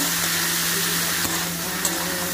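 Chopped ridge gourd and potato frying in oil in an aluminium kadai: a steady sizzle, with a couple of faint spatula clicks in the second half.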